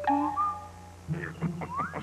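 Short whistle-like chirps, a couple rising in pitch, followed by a quick run of squeaks ending in an upward glide.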